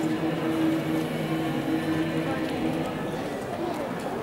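Murmur of a crowd with scattered footsteps as a processional float is carried slowly along the street; a single voice holds a sung note for the first couple of seconds, then fades.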